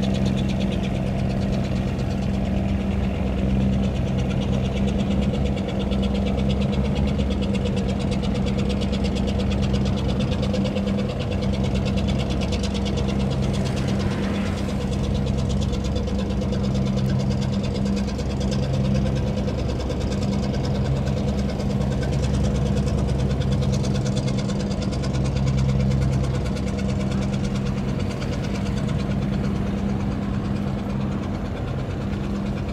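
A boat engine running steadily at an even speed, with a low, continuous throb.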